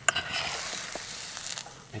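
Trout frying in a pan of hot oil, a steady sizzle, with a sharp click right at the start.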